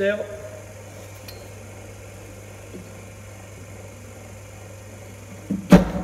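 A cricket bowling machine firing a ball: one sharp, loud thump near the end, over a steady low hum.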